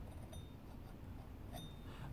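A quiet pause with two faint, brief clinks a little over a second apart, from a multi-tool and its blade being handled. The tool is not running.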